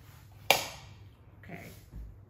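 A single sharp knock or click about half a second in, dying away quickly, followed by a softer rustle near the end.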